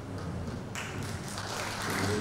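Hand clapping that starts abruptly a little under a second in, sharp irregular claps over a low steady hum.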